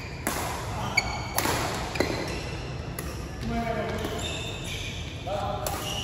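Badminton rackets hitting a shuttlecock in a rally: sharp cracks, several in the first three seconds and one more near the end, with short squeaks of shoes on the court floor between them.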